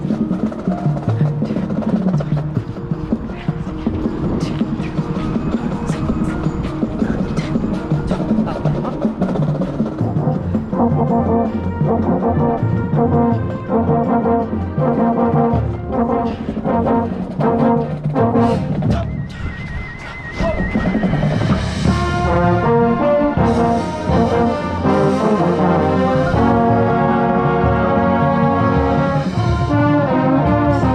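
Marching band rehearsing. For the first ten seconds or so the drumline's sharp percussion hits dominate, then the brass section comes in with short rhythmic chords. After a brief drop near twenty seconds the brass, with a trombone close by, plays louder sustained chords.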